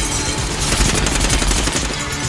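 Rapid, continuous automatic gunfire in a film soundtrack, shots packed closely together, mixed with the film's score music.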